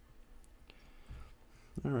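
A few faint clicks of plastic Lego pieces being handled and fitted together by hand.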